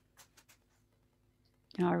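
A near-quiet pause holding a few faint short clicks in the first half-second, then a woman's voice starts talking near the end.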